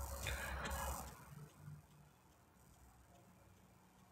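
A faint rustle over a low rumble for about a second, then near silence.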